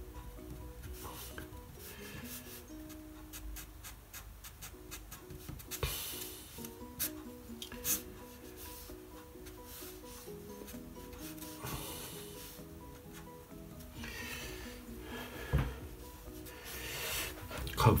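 Short scratchy strokes of a Sharpie permanent marker rubbing across watercolour paper, in several spurts, over soft background music of held notes.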